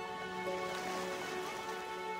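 Quiet epic orchestral music: soft held chords and slow-moving notes over a steady, even hiss.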